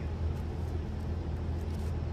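Steady low rumble in the background, with a few faint clicks and rustles as dry, bare-rooted bonsai stock is handled in a pile.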